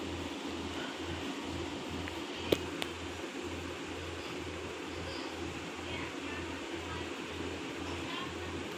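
Steady room background noise: a hiss with a low hum that pulses about one and a half times a second, and one sharp click about two and a half seconds in.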